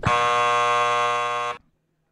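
Recorded sound of an electric vibrator buzzing steadily for about a second and a half, then cutting off abruptly.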